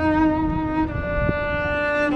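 Solo cello played with the bow: a slow melody of long held notes, one note sustained for about a second and then a change to the next.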